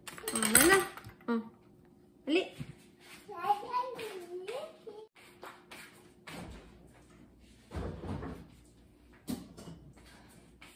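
A toddler's voice vocalising without clear words during the first half. After that come a few short clatters and knocks of kitchen things being handled.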